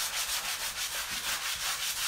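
Sanding block rubbed in quick back-and-forth strokes, about four a second, over painted wood, distressing the fresh paint.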